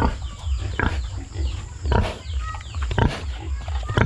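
Pigs and piglets in a pen grunting and squealing: many short falling squeals, with a louder grunt about once a second, over a low rumble on the microphone.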